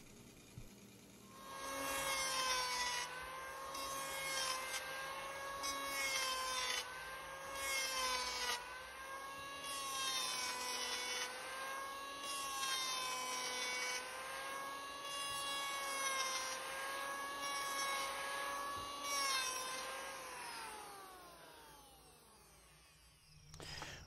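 Electric hand planer running and making repeated passes along a square spruce oar shaft to taper it, each cut adding a rasping burst over the motor's steady whine, which sags slightly under load. Near the end the motor winds down, its whine falling in pitch and fading out.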